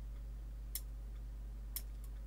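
Scissors snipping twice, two sharp clicks about a second apart, while paper leaves are cut out, over a steady low electrical hum.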